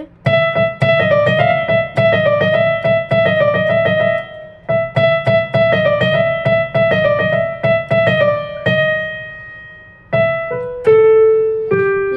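Casio CT-X5000 electronic keyboard on a piano voice, playing a quick repeated melodic phrase of single notes with a steady low accompaniment. The playing breaks off briefly about four seconds in and again near ten seconds, then picks up with a held lower note.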